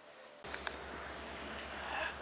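Near-silent room tone that cuts off suddenly about half a second in to steady outdoor noise: a low rumble with a hiss of wind on the microphone and a few light clicks.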